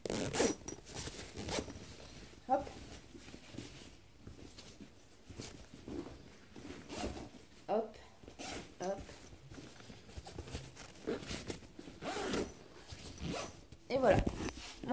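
Zipper of a sports bag being pulled shut in a series of short, uneven strokes.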